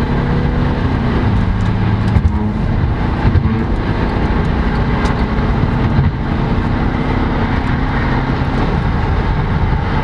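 Car engine pulling hard under acceleration, with road noise, heard from inside the cabin. The engine's note changes pitch about two seconds in and again around six seconds in.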